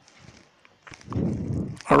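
Faint computer keyboard keystrokes as a short command is typed, with a low, noisy rustle in the second half. A man's voice begins at the very end.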